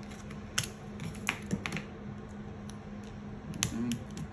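Irregular light taps and clicks of die-cut cardstock frame pieces being handled and set down on a paper layout, with a few sharper taps about half a second in, just past a second, and near the end.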